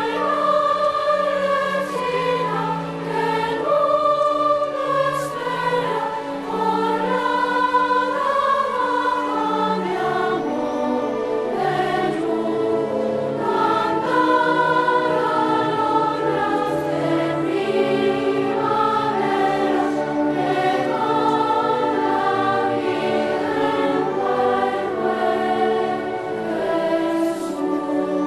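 Children's choir singing with a string orchestra, several voice parts moving together in long held chords.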